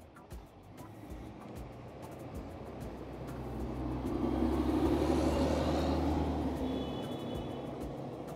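A bus driving past: its engine and tyre noise grow louder, peak about halfway through, then fade away.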